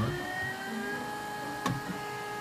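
XYZprinting da Vinci 1.0 3D printer printing: its stepper motors whine in several steady tones that drift in pitch as the print head moves. A single click comes near the end.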